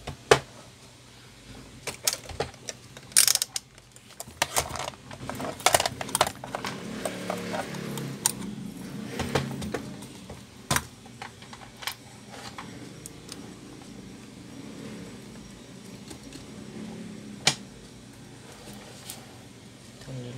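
Scattered clicks, taps and small rattles of an amplifier board, its wires and hand tools being handled on a workbench. The sharpest knocks come just after the start and about three, six and seventeen seconds in.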